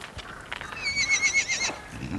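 Horse whinnying: one quavering call of a little over a second, starting about half a second in.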